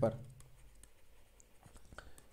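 Faint scratching and light ticking of a stylus writing by hand on a pen tablet, a few scattered taps through the pause.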